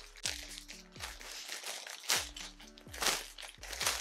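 A plastic mailing bag crinkling in short bursts as it is handled and pulled open, over background music with a steady beat.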